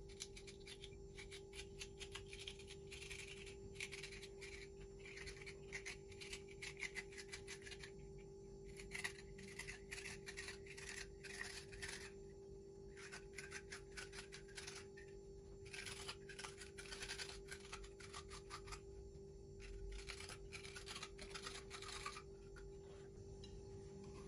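A vegetable corer scraping out the core of a raw carrot in quick repeated strokes. The strokes come in bursts of a few seconds with short pauses between, as the carrot is hollowed for stuffing.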